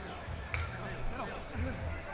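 Football players' voices calling out across the pitch, with one sharp thump of a football being kicked about half a second in.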